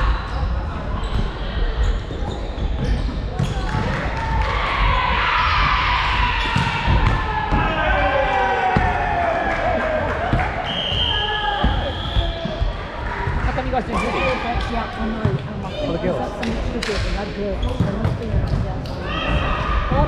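Volleyballs being struck and bouncing on a hardwood court floor, a rapid scatter of sharp hits, mixed with players' voices calling out. All of it echoes in a large sports hall.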